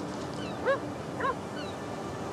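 Two short yelping animal cries, each rising and falling in pitch, about half a second apart, over a steady rush of wind and sea.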